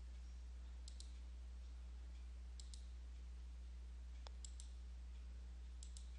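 Faint computer mouse clicks, coming as four quick pairs spaced a second or two apart, over a steady low electrical hum.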